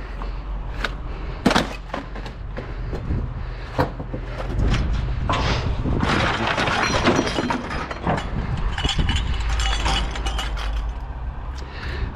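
Scrap metal clanking and clattering as pieces are thrown off a trailer onto a scrap pile, over the steady low hum of an engine running. The clatter gets louder and denser from about four seconds in.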